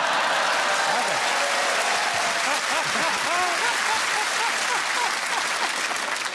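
Studio audience applauding and laughing, a steady wave of clapping that eases slightly near the end.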